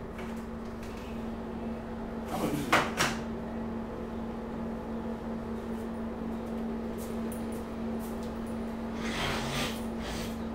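A few sharp knocks or clatters about two and a half to three seconds in, then a softer rustle near the end, over a steady low hum.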